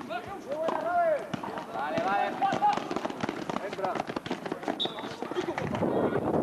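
Basketball players calling out to each other during play, two louder shouts in the first half, with many short knocks from feet and ball on the court.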